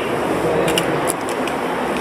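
Handheld camera being moved, with a few short clicks and rustles from handling a little under a second in, over a steady noisy background hiss.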